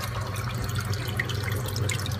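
Saltwater aquarium's circulating water running and dripping, over a low steady hum.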